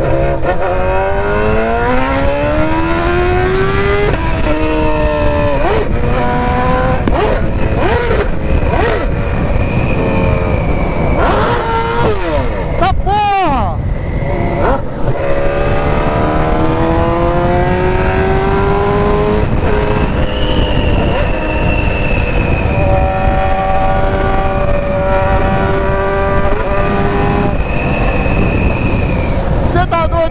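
BMW S1000's inline-four engine accelerating hard through the gears: the revs climb and drop with each quick upshift in the first half, then make one long climb before holding steady near the end. Wind rushes over the microphone throughout.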